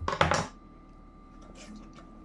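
A knife cutting a slice from a ripe tomato on a cutting board: three or four quick knocks within the first half second.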